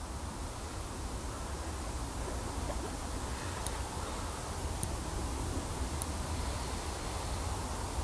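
Steady outdoor background noise: a low rumble and an even hiss, with a few faint ticks about a second apart in the middle, and no distinct splashes.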